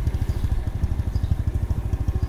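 Motorbike engine running at low speed, heard from on the bike as it rides slowly along a street, a steady rapid low putter.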